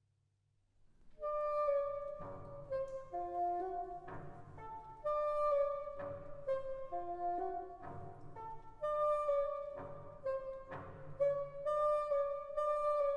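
A bassoon playing a winding solo melody high in its range, entering about a second in after silence, with low orchestral chords struck every couple of seconds beneath it.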